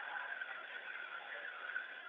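Steady hiss of an open space-to-ground radio link during a pause between words, thin and cut off above the middle range.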